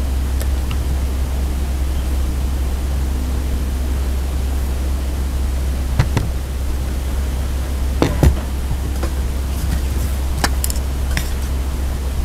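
A steady low hum under a few sharp clinks of serving utensils against ceramic plates, about six, eight and ten seconds in, as food is dished out.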